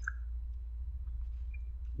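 A steady low electrical hum with a few faint mouth clicks.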